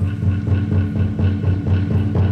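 Kagura accompaniment: a large barrel-shaped taiko drum struck about twice a second, with a light, fast ringing pattern running above the beat.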